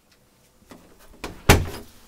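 A door being shut: a few light knocks and rattles, then one loud thud about one and a half seconds in that dies away quickly.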